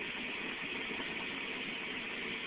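1997 Ford Crown Victoria's 4.6-litre V8 idling steadily, heard from inside the cabin, about half a minute after a cold start.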